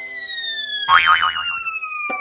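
Cartoon falling sound effects: a long, slowly descending whistle, with a thump and a wobbling boing about a second in as the character hits the floor.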